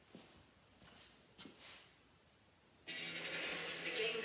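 A one-minute countdown timer video on a tablet starts playing about three seconds in: a sudden steady drone with a held low tone. Before that, only a few faint knocks.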